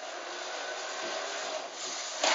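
Steady mechanical whir from an R2-D2 replica's dome motor and panel servos as the dome turns with its panels open, just after a scream sound effect.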